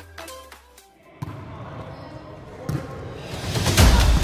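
Intro music fades out in the first second. Then comes the echoing sound of an indoor volleyball court: a ball knocks off the floor a few times, the loudest near the end, over players' voices.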